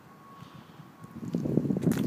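Wind buffeting the microphone: quiet at first, then a ragged low rumble that swells about a second in.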